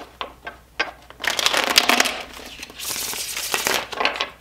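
A tarot deck being shuffled by hand: a few light card taps, then two fast fluttering runs of the cards about a second each, one beginning just after the first second and one near the end.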